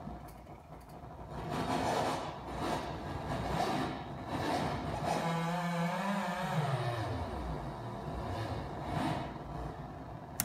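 Modular synthesizer drone with its tone shifting as the Quadrax function generator's knobs are turned. A little after five seconds in, a low tone rises slightly and then glides down.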